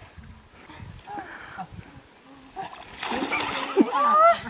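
A person splashing into shallow muddy water as she falls backward, a burst of water noise about three seconds in, with a short cry as it ends.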